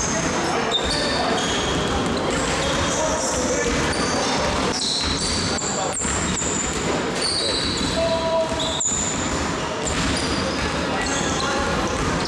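Basketballs bouncing on a hardwood gym floor, with many short high-pitched squeaks of sneakers on the court.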